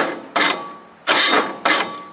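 Small diesel engine's electric starter cranking it over slowly in four labored surges, bogging at each compression stroke without the engine catching: a sign of a low battery.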